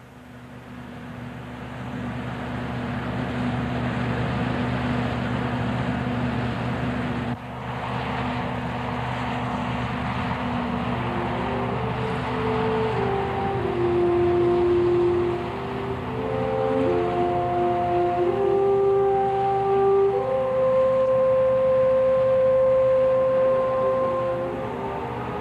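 Combine harvester running steadily, a low engine hum with machinery noise that swells over the first few seconds. From about halfway in, slow, held music notes come in over it.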